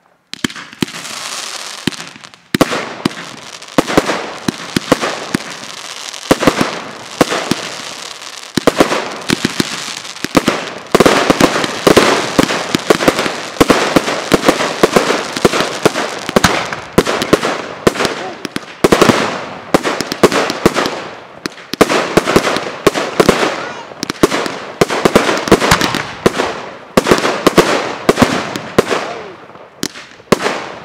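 Fireworks display: aerial shells bursting, with many sharp bangs in quick succession over a continuous hiss. It starts after a brief quiet moment at the very start and grows denser from about ten seconds in.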